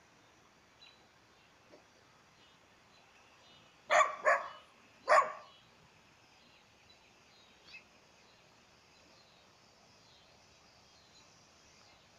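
A dog barking three times in quick succession, about four seconds in, over a quiet outdoor background.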